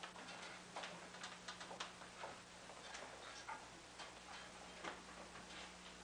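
A quiet room with faint, irregular small clicks and knocks over a low steady hum.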